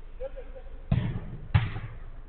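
Two sharp thuds of a football being struck on a five-a-side pitch, about half a second apart, the second louder, each with a short tail.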